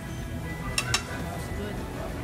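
Two quick clinks of tableware, a fraction of a second apart, about three-quarters of a second in, over restaurant background music and voices.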